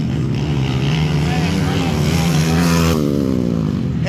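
Motocross dirt bike engines racing on the track, revving with their pitch rising and falling over a steady drone.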